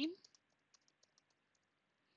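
Faint computer keyboard typing: a quick run of light key clicks that stops about one and a half seconds in.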